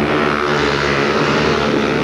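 A pack of speedway motorcycles, 500cc single-cylinder methanol-fuelled racing engines, running hard together through a bend. Several engine notes overlap at once, steady with small rises and falls in pitch.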